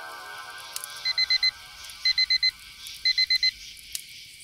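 Digital alarm clock beeping: three bursts of four quick, high beeps, one burst each second, as a note of music fades out beneath.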